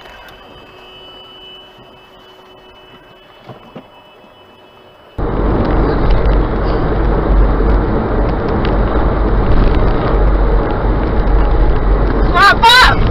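A faint hum with thin steady tones, then, about five seconds in, a sudden switch to loud, steady road noise of a car driving at highway speed: tyre and wind noise with a deep rumble, heard from a dashcam inside the cabin.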